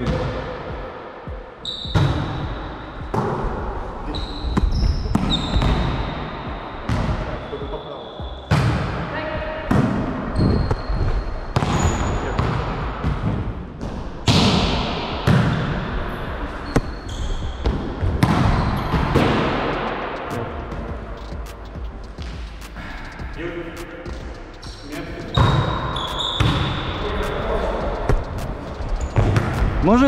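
A volleyball being passed and set back and forth: sharp slaps of hands and forearms on the ball, about one a second, echoing in a large gym hall.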